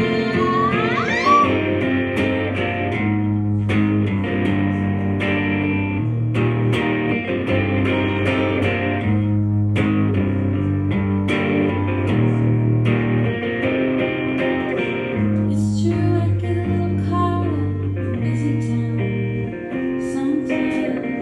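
Live band music led by electric guitar in an instrumental stretch of an Americana song: strummed chords over held low notes that change about every second, with a steady beat. About a second in, a sung note slides up and down.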